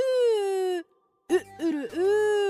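Human voice imitating a rooster crowing with a drawn-out 'ü-ürü-üü' call. One long held note breaks off before the middle; after a short pause, quick rising-and-falling syllables run into another long held note.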